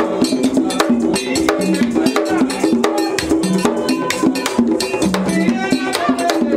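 Vodou ceremony drumming: hand drums played in a fast, driving rhythm, with a metal bell or iron struck over them in quick repeated strokes.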